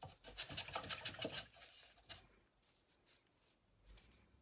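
Paintbrush scrubbing and dragging on canvas: a quick run of scratchy strokes over the first second and a half or so, then a few fainter ones.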